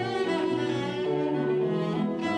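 Cello played with the bow in a classical piece, a run of changing notes.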